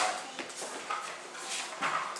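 A few faint footsteps of a man walking across a hall floor, over quiet room tone.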